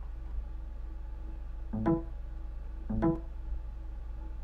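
Two short pitched chimes about a second apart: the Windows device-connect sound as the Allen-Bradley 1203-USB adapter is plugged into the computer's USB port and detected. A steady low hum runs underneath.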